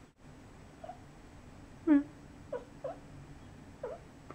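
A cat's short chirps and mews, about five in all, the loudest about two seconds in. This is the chirping a cat makes while watching birds through a window.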